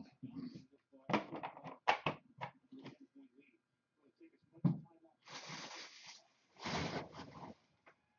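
Trading card packs and cards being handled on a table: a run of clicks and a single knock, then two rustles of about a second each, like wrappers crinkling and cards being shuffled.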